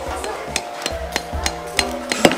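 A steel hammer striking a chisel to carve stone, giving a series of light, sharp taps at irregular spacing.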